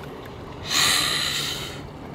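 A person breathing out hard: a breathy hiss of about a second that starts a little under a second in and fades away.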